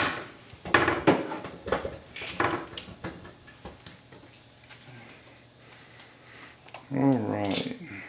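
Knocks and clattering rattles against an electric range as it is handled from behind, several in quick succession in the first few seconds, then only scattered light taps.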